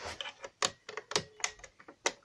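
Sharp plastic clicks, about half a second apart, from a KAC resettable manual call point being worked with its plastic reset key.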